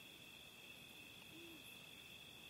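Near silence: a faint, steady high-pitched trill of night insects, and one faint, short, low hoot-like call about one and a half seconds in.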